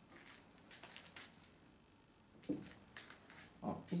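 Faint handling sounds at a small glass aquarium as a hand is drawn back out of the water after setting a clay ball on the bottom: soft sloshing and rustling, then a single soft knock about two and a half seconds in.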